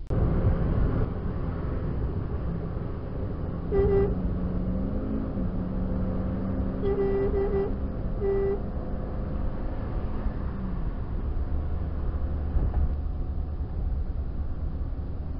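Car road and engine noise heard from inside the cabin while driving, with a vehicle horn giving short beeps: one about four seconds in, a quick triple around seven seconds, then one more.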